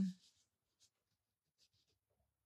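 The end of a woman's drawn-out "um", then near silence with two faint short ticks about a second apart.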